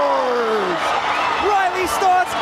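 A hockey commentator's long drawn-out goal call, the voice sliding down in pitch and trailing off just under a second in, over an arena crowd cheering the goal.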